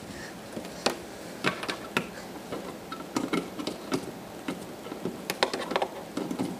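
Sharp snapping static sparks jumping from a charged Sony CRT television, about a dozen short snaps at irregular intervals.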